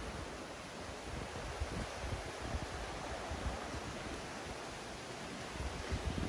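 Steady wind noise outdoors: wind buffeting the microphone, with leaves rustling in the trees.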